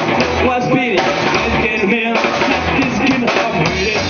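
Live rockabilly band playing a steady, loud rock'n'roll groove on acoustic guitar, hollow-body electric guitar, upright bass and drum kit.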